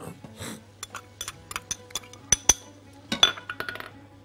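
Scattered light clinks and taps of kitchenware, glass bowls and a cooking pot, as chopped bell pepper goes into the pot: a dozen or so sharp, separate ticks, with soft background music under them.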